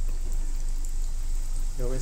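Breaded balls frying in shallow oil in a nonstick pan: a steady sizzle with scattered small crackles, over a low steady hum.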